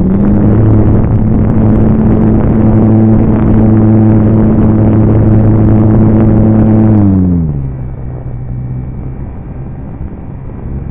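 Model airplane's motor and propeller, heard from on board, running at a steady high throttle. About seven seconds in, the pitch falls and the sound drops to a lower, quieter drone as the throttle is pulled back.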